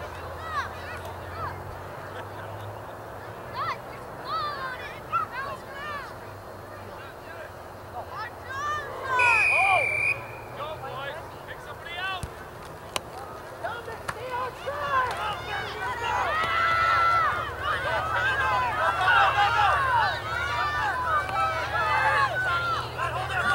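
Crowd and players shouting and calling across a youth football field. About halfway through, a referee's whistle blows once for about a second for the kickoff. The shouting grows louder and busier toward the end as the kick is run back.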